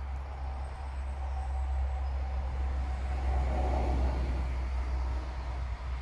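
Simulated engine sound from an RC model tank's sound unit: a steady low rumble, swelling in the middle.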